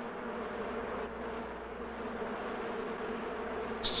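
Honeybees buzzing in a steady, even hum of beating wings.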